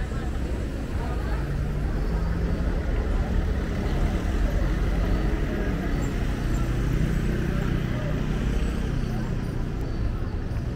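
City street ambience: the low, steady rumble of a motor vehicle's engine, swelling slightly around the middle, with passers-by talking.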